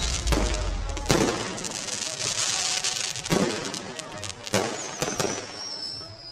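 Fireworks going off: a string of sharp bangs at uneven intervals, with crackling between them and a high whistling tone coming in near the end.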